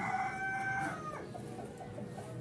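A rooster crowing: one long held call that ends about a second in.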